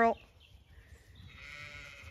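A Zwartbles sheep bleating once, faintly, for about a second, starting about a second in.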